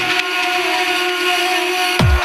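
Trance music in a short break without kick drum or bass: held synth tones over a steady, hissing noise wash.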